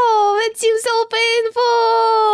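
A high voice singing long held notes that waver and dip in pitch, with short breaks between them.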